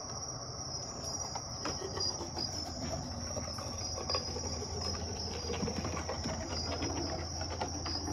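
Night swamp insect chorus of crickets, a steady high chirring, joined about halfway through by a low rumble that grows stronger and sounds ominous.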